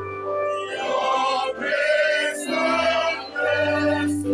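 A vocal group singing held notes in harmony through microphones, over a steady low bass note from an amplified keyboard.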